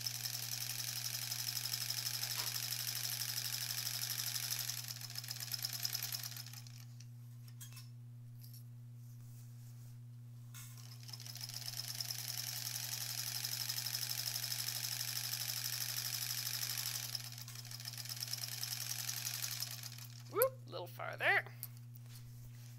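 Electric sewing machine stitching a quilt seam in two long runs with a pause between, a fast, even run of stitches. Each run trails off rather than stopping dead: the machine rolls on for a few more stitches after the pedal is lifted.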